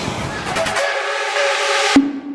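A steady, whistle-like chord of held tones from a transition sound effect, the low end falling away about a second in, ending with a sharp hit as the logo card appears.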